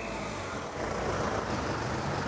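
Steady city street traffic noise with the low rumble of car engines running.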